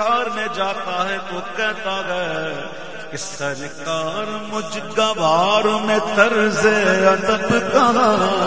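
A man reciting a naat in a drawn-out, ornamented chanting voice, the melody wavering and gliding, over a steady low drone held underneath.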